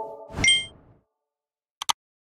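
Motion-graphics sound effects: a sharp hit with a bright, high ding that rings briefly, about half a second in, then two quick clicks near the end as a cursor presses a Subscribe button.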